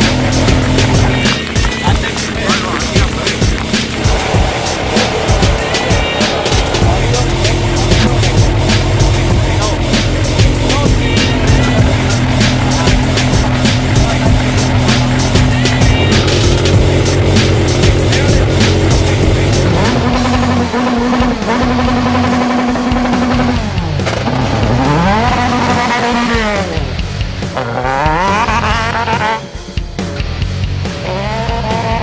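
Dallara Formula 3 car's four-cylinder racing engine accelerating hard, rising in pitch through three quick upshifts in the last ten seconds, under background music. Before that, a steadier stretch dominated by music.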